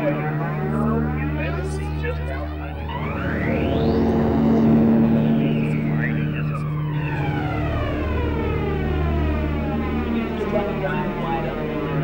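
Electronically warped cartoon soundtrack: garbled voices over a low steady drone, with whooshing sweeps that rise and fall in pitch, loudest about four to five seconds in.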